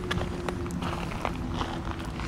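Footsteps on gravel, a few short, irregular steps, over a faint steady low hum.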